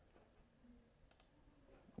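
Near silence: faint room tone with a couple of soft clicks about a second in.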